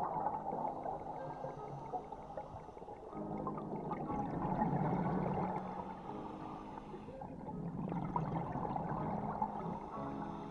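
Scuba diver's exhaled air bubbling and gurgling from the regulator, heard through an underwater camera housing, swelling and fading in slow waves with each breath.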